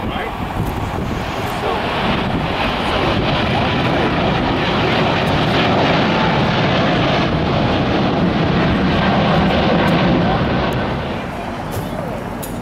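Boeing 777 twin-jet engines at take-off thrust as the airliner lifts off and climbs out: a steady jet engine noise that swells to its loudest between about six and ten seconds in, then falls away near the end.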